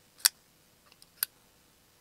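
Lothar folding knife's blade being flicked open and shut against its detent: sharp, crisp clicks about a second apart, a third coming right at the end.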